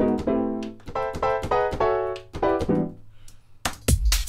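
Sampled piano chord from a Yamaha Grand Piano patch, played from Logic Pro X's Quick Sampler as a run of short rhythmic stabs at changing pitches. Just before the end, a house drum beat with a heavy kick comes in.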